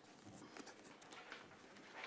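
Near silence: quiet studio room tone with a few faint, irregular small clicks and taps.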